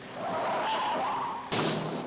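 Film car-chase sound with no music: a car running downhill, then about one and a half seconds in a sudden loud rush of noise as the car meets the sand dumped from a truck.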